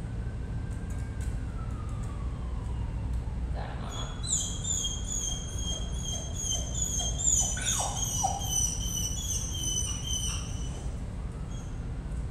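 Dog whining in a run of short, high-pitched whines, in frustration, over a steady low background rumble.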